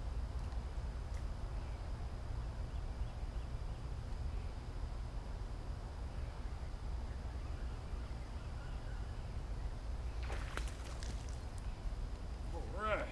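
Steady low rumble of wind on the microphone by a pond. Near the end, a brief burst of sharp splashing as a hooked bass is brought up through the surface.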